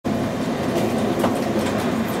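Inside a TEMU2000 Puyuma tilting electric train running at speed: a steady rumble of wheels and running gear, with a few sharp clacks from the wheels over the rails about halfway through.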